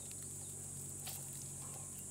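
Steady high-pitched insect chorus trilling without a break, with a few faint clicks.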